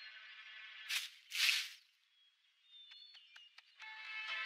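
Cartoon sound effects: a fading tail of background music, then two quick swishes in close succession about a second in, a brief silence, and a few faint clicks and soft tones near the end.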